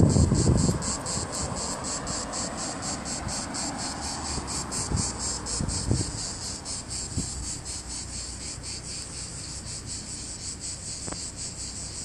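Cicadas buzzing in a steady high-pitched pulsing rhythm over a faint low traffic rumble. A short laugh in the first second is the loudest sound.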